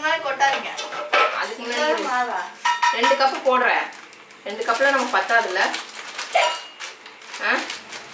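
Clinks and rustling of a plastic flour packet knocking against a mixer-grinder jar as wheat flour is poured in, under voices that keep coming and going.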